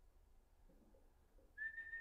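Near silence, then about one and a half seconds in a single steady whistled note starts and holds.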